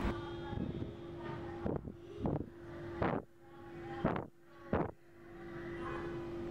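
About five short puffs of air buffeting the microphone, spread over a few seconds, over a steady low hum.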